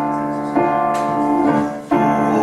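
Piano chords played on a stage keyboard, held and ringing, with new chords struck about half a second in and again about a second and a half in.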